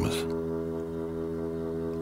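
A low, steady sustained drone of background music, one chord held without change. A man's spoken word trails off in the first moment.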